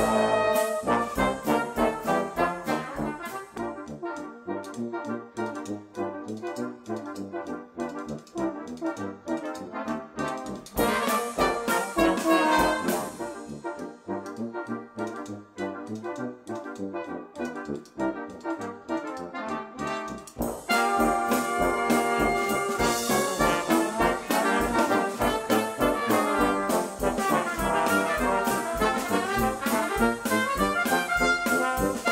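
A brass ensemble of trumpets, French horns, trombones and tuba playing a jazzy piece together, backed by a drum kit keeping a steady beat. The band grows louder and fuller about twenty seconds in.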